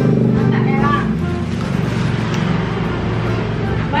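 A motor vehicle's engine running close by, a low steady hum that shifts in pitch about a second in, with brief voices over it.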